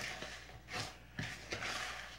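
A spoon stirring granulated tapioca and sugar in a plastic bowl as milk is poured in: faint, uneven scraping and swishing.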